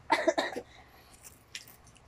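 Two quick coughs from a person, close together right at the start, followed by quiet with a faint tap about a second and a half in.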